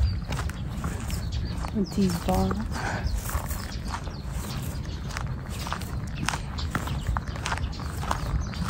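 Footsteps crunching on a gravel path at a steady walking pace, each step a short click, over a low rumble. A brief vocal sound comes about two seconds in.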